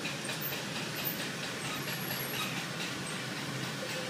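Potter's wheel spinning steadily under a small clay pot being thrown, giving an even mechanical rumble and hiss with no change in speed.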